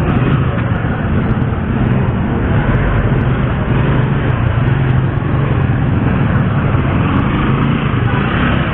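Steady motorcycle and street traffic noise: an engine hum under a continuous rushing noise, with no marked changes.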